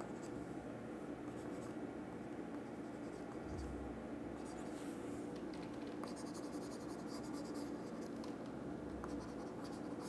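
Faint, intermittent scratchy strokes, like a pen moving over a surface, over a low steady hum.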